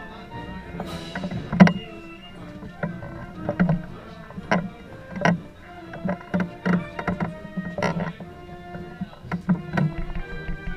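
Processional band music with sustained notes, over which come irregular sharp knocks and clunks, about one or two a second, the loudest about one and a half seconds in, from the wooden carrying poles and the camera mounted among them.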